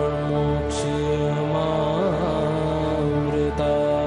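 Devotional Hindu mantra chanting over a sustained drone. A held chanted note wavers in pitch about halfway through.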